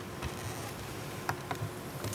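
Paper being handled and opened close to a podium microphone: a sealed question envelope, with a few short crackles over a steady low electrical hum.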